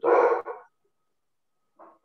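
A dog barks once, a single loud, short bark at the very start.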